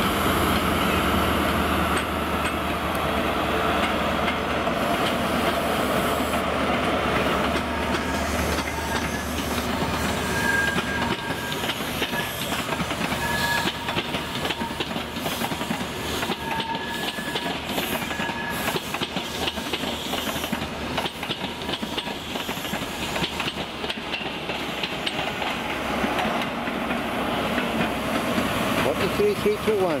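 A High Speed Train with Class 43 diesel power cars pulling out. The engine runs steadily at first, then the coach wheels clatter over the rail joints and pointwork as the train passes, with short high wheel squeals in the middle.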